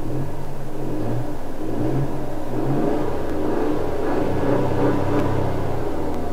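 Hyundai i20's 1.0-litre turbocharged three-cylinder petrol engine running, heard from inside the cabin with the recording turned up: a steady low growl whose pitch rises and falls slightly.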